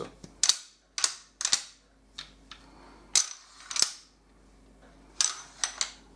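Sharp metallic clicks and snaps from M1 Garand rifle parts being fitted and worked by hand, about ten at irregular intervals, some close together in pairs.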